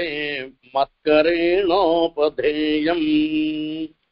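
A man chanting a Sanskrit verse in a slow, melodic recitation. It has a brief pause about half a second in, a wavering, ornamented passage in the middle, and a long held note that stops just before the end.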